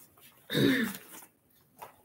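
A woman clearing her throat once, about half a second in, followed by a faint tap near the end.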